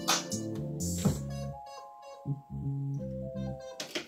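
A freshly built electronic beat playing from a Yamaha MO6 synthesizer workstation, with drums, bass and keys together at first. About a second and a half in, the drums drop out and sustained synth notes carry on until the beat cuts off near the end.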